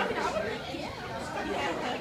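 Indistinct chatter of several people in a bar room.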